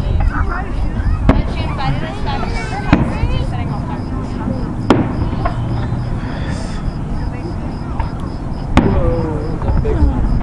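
Aerial fireworks shells bursting overhead: about four sharp booms spread unevenly across a few seconds, over a steady low rumble.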